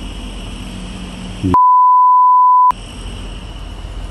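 Censor bleep: a single steady beep lasting about a second, starting about a second and a half in, with all other sound cut while it plays. Around it is a steady low background noise.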